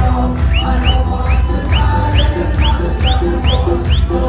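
Folk-punk band playing live, with fiddle and accordion over a heavy drum and bass beat. From about half a second in, a short high note that swoops up and falls back repeats about twice a second.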